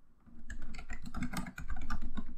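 Typing on a computer keyboard: a quick run of key clicks starting about half a second in.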